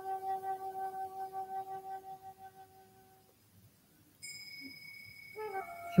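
Soft background meditation music: a held note with a gentle pulsing waver that fades out about halfway through, then after a short gap a higher, quieter note comes in near the end.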